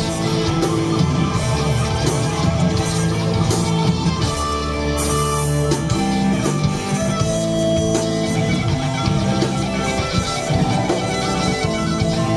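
Live southern rock band playing an instrumental passage: electric guitar over bass, drums and cymbals, loud and continuous.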